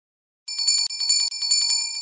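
A small metal bell rung in a fast trill, about eight strokes a second, starting about half a second in, then ringing out.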